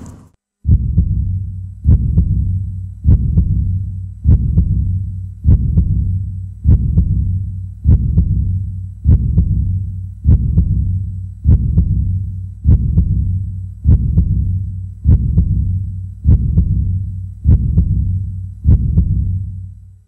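Deep, heartbeat-like pulse sound effect: a single low thump about every 1.2 seconds, each fading out before the next, repeated steadily and stopping suddenly at the end.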